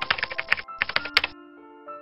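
Rapid clicking of a computer-keyboard typing sound effect, in two quick runs over the first second and a half, over soft background music.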